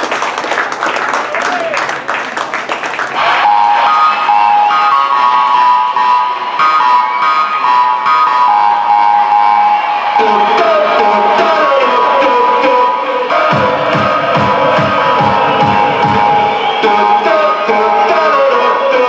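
Recorded music playing loudly, with bass notes pulsing in about two-thirds of the way through. In the first three seconds it is mixed with a burst of crowd cheering and clapping.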